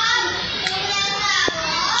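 Several children's voices overlapping, talking and calling out over one another as they play.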